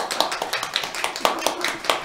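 A small congregation clapping: a dense, uneven patter of many hands.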